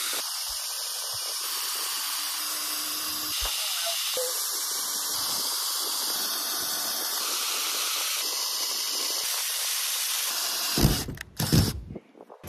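Ryobi cordless drill boring corner holes through the van's sheet-metal roof, a steady hissing whir that cuts off abruptly near the end. A few short knocks and clatters follow.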